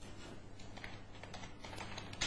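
Computer keyboard being typed on: a quick run of faint key clicks as a short word is entered.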